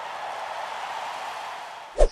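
Steady hiss-like noise effect from an animated logo intro, slowly fading, with a short low thump right at the end.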